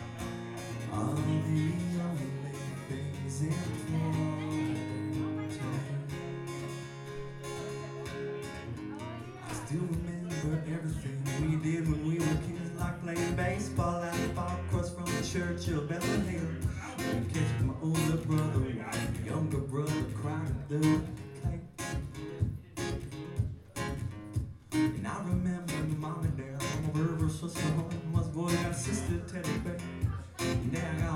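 Acoustic guitar played live. It starts with ringing, held chords, and about ten seconds in it breaks into fast, steady strumming.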